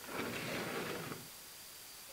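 About a second of scraping as the rope-pulled feeding platform of an elephant cooperation apparatus is dragged across the dirt.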